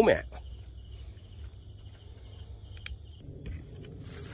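Night insects, crickets among them, trilling steadily in several high-pitched bands, with a few faint clicks about three seconds in.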